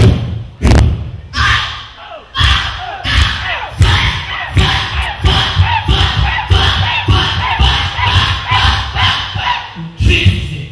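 A man shouting or praying loudly into a handheld microphone over a hall PA, with heavy thuds. Two sharp knocks open it, and thuds then continue about twice a second under the voice.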